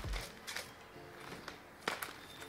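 Plastic-packaged cross-stitch kits being handled, with short crinkles and a sharp crackle near the end as a packet is laid on a stack of paper magazines.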